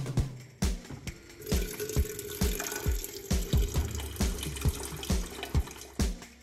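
Water running from a water purifier's tap into a stainless steel electric kettle, starting about a second and a half in and stopping near the end. Music with a steady bass-drum beat plays throughout.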